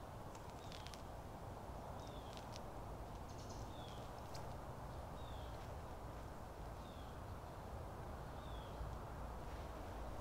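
Steady low outdoor background hum, with a bird repeating a short falling chirp about once a second and a few faint clicks.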